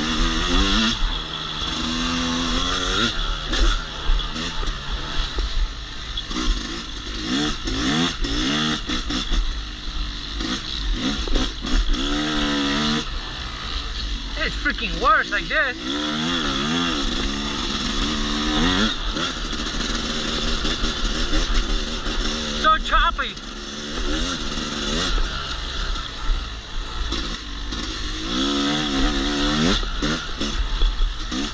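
Yamaha YZ250X 250cc two-stroke single-cylinder dirt bike engine under way, its pitch climbing and dropping back again and again as the rider accelerates and shifts, with a steady wind rumble on the microphone.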